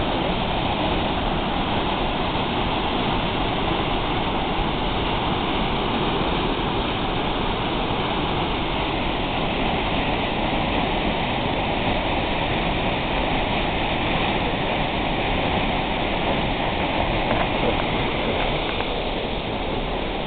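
Minnehaha Falls in spate after rain: a heavy waterfall plunging into its pool, a loud, steady rush of water.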